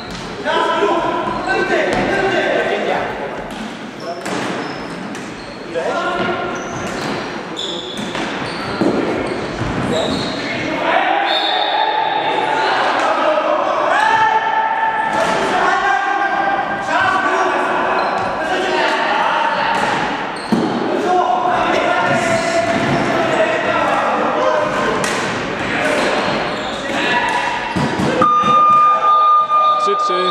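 Floorball play echoing in a large sports hall: players' shouts and calls with frequent knocks and clacks of sticks, ball and feet on the wooden floor. A steady high tone sounds near the end.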